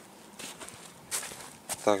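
Footsteps on snow-dusted, frozen ground: a few soft scuffs and crunches from someone walking.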